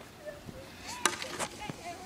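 Two sharp clacks about a second in, a hockey stick striking a ball, with faint voices.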